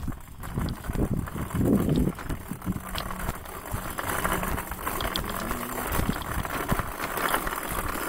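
Small wheels of a loaded rolling cart rattling and rumbling over rough asphalt.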